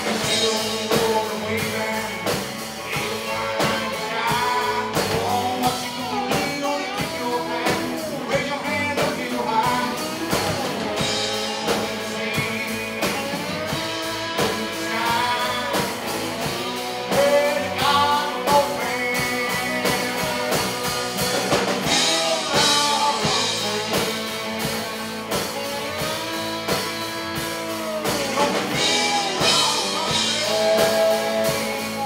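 Live band playing: a man sings lead over electric guitar, with a drum kit keeping the beat.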